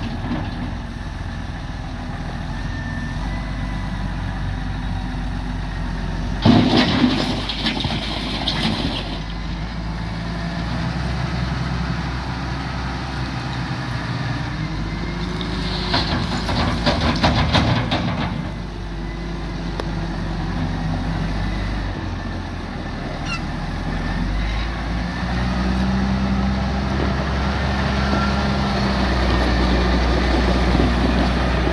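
Valtra T174e tractor's six-cylinder diesel engine running steadily under load as the front loader works a gravel pile, with two spells of a few seconds each of gravel and stones rattling, about six seconds in and again about sixteen seconds in. Near the end the engine note rises as the tractor drives off.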